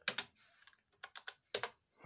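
Computer keyboard typing: an uneven run of sharp key clicks as a search term is entered.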